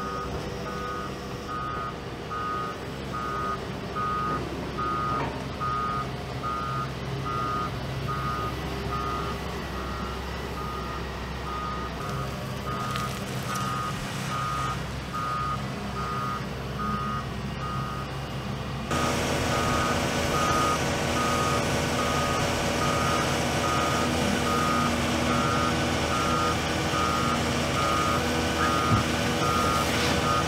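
Heavy construction machinery's reversing alarm beeping steadily, about two beeps a second, over diesel engines running. The sound gets louder about two-thirds of the way through.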